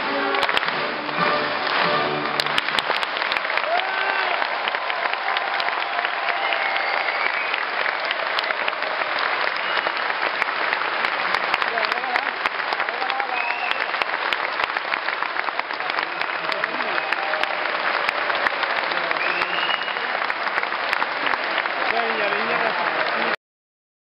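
An orchestra's final notes die away in the first couple of seconds, followed by sustained audience applause with a few voices calling out over it. The applause cuts off abruptly near the end.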